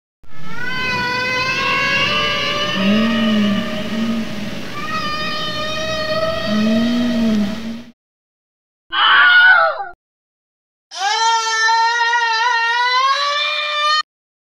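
A string of comedy sound effects: a long, wavering, high-pitched wail lasting about seven seconds, with two short arching chirps underneath, then a brief noisy burst about nine seconds in, then another wavering wail that rises slightly toward the end.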